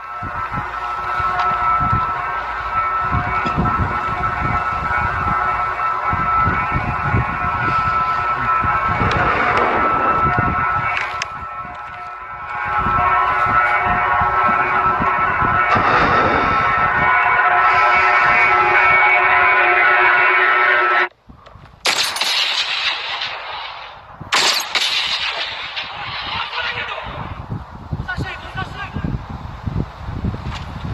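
Film soundtrack: sustained music with low rumbling hits underneath for about twenty seconds, cutting off suddenly, then bursts of rough, noisy sound effects.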